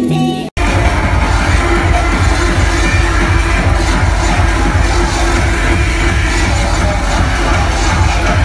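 Live electronic music played loud through a venue's sound system, with a dense, pounding bass beat. About half a second in, a track with held synth tones cuts off abruptly, with a brief dropout, and the beat-driven piece takes over.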